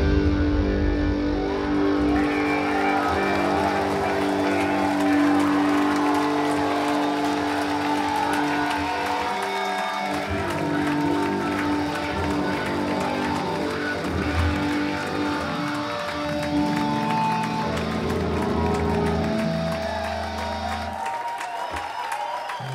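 Live instrumental rock played over a club PA, heard from the crowd: electric guitar lines over a sustained bass. The bass drops out about a second before the end as the song finishes.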